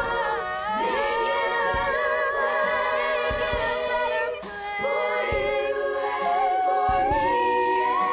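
Children's choir singing, led by two teenage girl soloists whose melody line wavers with vibrato, with a short breath-pause about halfway through.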